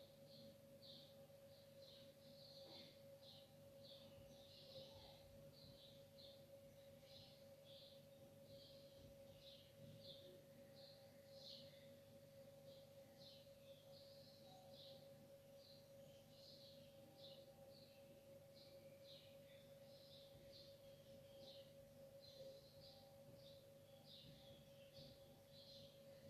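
Near silence: faint high chirps repeating about twice a second over a steady faint tone and low hum.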